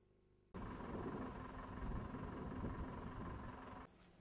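Wind buffeting an outdoor camera microphone: a rough low rumble with a faint steady hum in it. It starts abruptly about half a second in and cuts off suddenly near the end.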